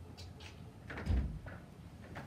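A dull thump against a front door about a second in, with faint clicks and rattles of the door as it is handled.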